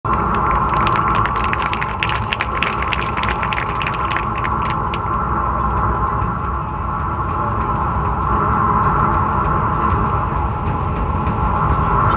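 A sustained electronic drone held steady through the stadium sound system, over a continuous low rumble, with scattered short clicks that are thickest in the first few seconds.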